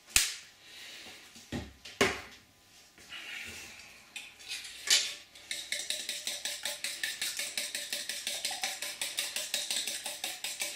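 A few sharp knocks against a stainless steel bowl, then a fork beating eggs in the bowl with quick, even strokes, about five a second, from about halfway through.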